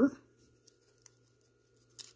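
Trading cards being slid and flipped through in a stack by hand: a few faint soft ticks over a quiet steady hum, then one short sharp click at the very end as the cards stick and part.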